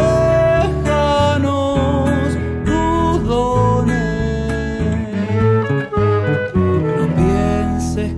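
Nylon-string classical guitar playing chords under a melody of long, sliding notes, most likely a cello.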